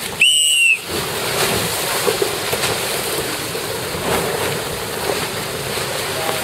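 A single short whistle blast about a quarter second in, a high steady tone that dips slightly in pitch, typical of the signal sounded as a boat crosses the finish line. After it, wind and water wash on the microphone.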